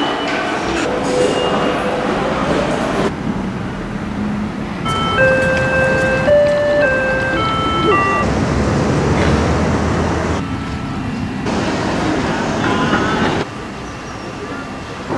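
Busy public-space ambience joined from several short clips, with voices and traffic noise. In the middle an electronic chime plays a short melody of steady notes lasting about three seconds.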